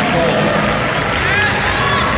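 Crowd chatter in a large arena: many voices talking at once, steady and without any one clear speaker.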